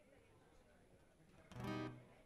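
Low stage hum, then about a second and a half in a single acoustic guitar chord is strummed once through the PA, ringing for about half a second.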